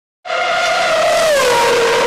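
High-revving racing car engine that cuts in suddenly, its pitch dropping once about a second in and then holding steady.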